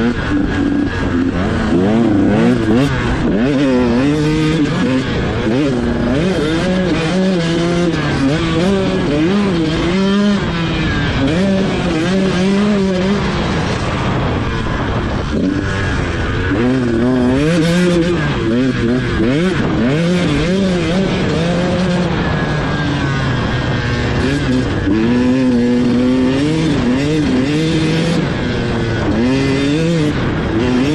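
KTM 150 XC-W two-stroke dirt bike engine under way, its pitch rising and falling every second or two as the throttle is opened and closed and the bike shifts through the gears.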